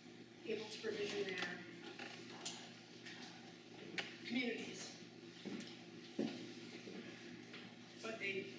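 A woman's voice speaking in short, broken phrases, with a sharp click about four seconds in.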